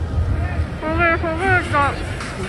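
Wind buffeting the phone's microphone, a steady low rumble, with a voice over it from about a second in, in drawn-out tones that rise and fall in pitch.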